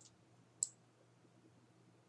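Computer mouse clicking: a faint click at the start, then a sharper single click about half a second in, over a faint steady low hum.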